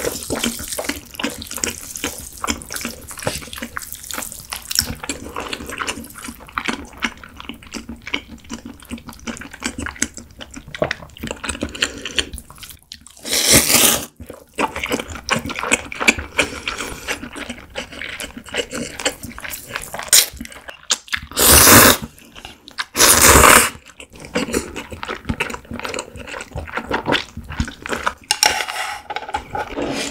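Close-miked slurping and chewing of cold naengmyeon noodles in broth: steady wet smacking and clicking, broken by three loud, noisy slurps about 13, 21 and 23 seconds in.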